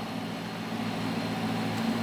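A 2006 Dodge Charger R/T's 5.7-litre Hemi V8 idling smoothly under the open hood, a steady low hum.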